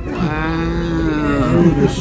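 A person's voice holding one long, steady, drawn-out wordless note for about a second and a half, breaking up near the end.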